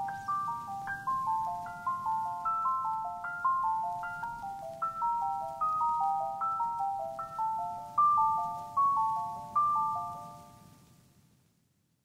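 Background music: a quick melody of short struck, mallet-like notes that fades out near the end.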